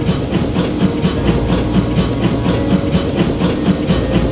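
A freight train passing: a loud low rumble with a rapid, even clatter of about five beats a second.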